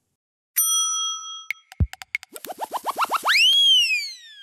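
Synthetic television transition sting starting about half a second in: a bell-like chime, a few sharp clicks and a deep thump, then a quickening run of short rising swoops that ends in a loud, bright tone that bends up and then slowly glides down.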